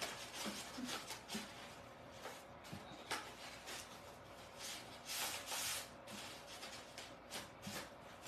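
Brown craft paper rustling and rubbing as it is rolled by hand into a scroll over a bead of glue, in soft, uneven scrapes, loudest about five seconds in.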